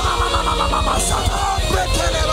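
Loud live worship music from a band, with voices over it.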